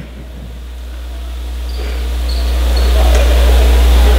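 A low, steady hum that grows gradually louder, with faint murmur from the gym crowd under it.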